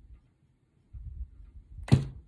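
About a second of quiet, then faint handling rustle and, near the end, a single sharp snap as a tarot card is laid down hard on the table.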